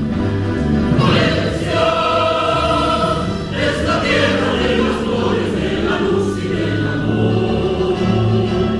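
Mixed choir of men's and women's voices singing in parts, with long held notes that move to new chords about a second in and again around three and a half seconds in.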